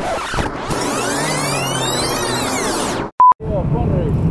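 Rewind sound effect: a fast, scrambled sweep of reversed sound that rises and then falls in pitch for about three seconds and breaks off suddenly. A short steady beep follows, then a small motorcycle idling.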